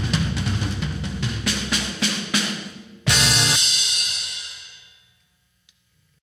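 A rock band ending a song: a drum fill leads into one final hit with a crash cymbal about three seconds in. The cymbal rings out and fades to silence within about two seconds.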